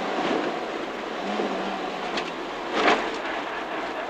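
Peugeot 205 GTi 1.9's four-cylinder engine running hard under a steady rush of road and wind noise, heard from inside the stripped rally car's cabin, with one brief louder rush about three seconds in.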